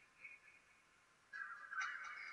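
A near-silent pause in a Quran recitation. A faint voice-like sound comes in during the second half.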